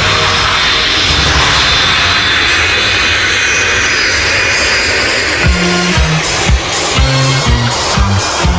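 Jet airliner engine noise, a sampled effect, fills a disco track's intro. About five and a half seconds in, the beat comes in with kick drum and bass.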